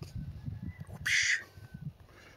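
A single short, harsh bird call about a second in, over uneven low rumbling from the phone being handled and turned.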